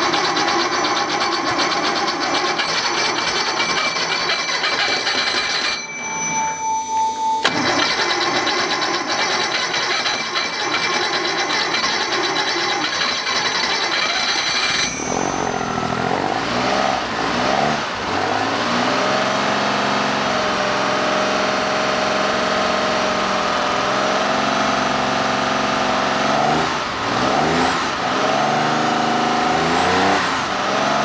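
Freshly rebuilt 1969 Porsche 911T air-cooled flat-six starting for the first time and running, with its cooling fan whirring. For the first half it runs rough and noisy with steady high whines. About halfway through it settles into a clearer running note, and the revs rise and fall as the carburetor throttles are worked by hand.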